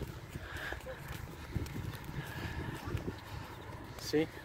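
Footsteps on a paved walkway, uneven soft footfalls over a low rumble on the phone's microphone.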